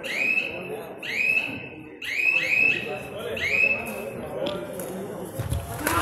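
Background voices and shouts in an indoor sports hall, with a short, high-pitched rising chirp repeating about once a second.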